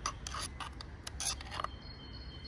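Small metal hex key scraping and clicking against a motorcycle handlebar clamp while a mount is fitted: a string of short, irregular scratchy clicks over a low steady rumble.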